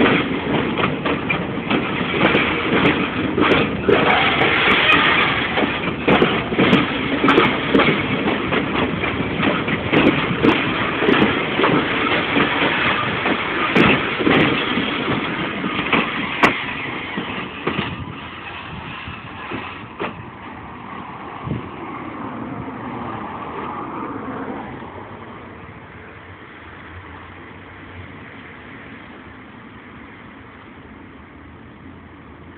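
Freight train of log-loaded flatcars rolling past at close range: a loud rumble full of rapid knocks and clacks from the wheels for about the first seventeen seconds. The noise then drops off as the cars clear, leaving a fainter rumble that fades further near the end.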